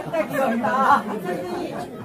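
Speech only: chatter of several people talking, louder in the first second.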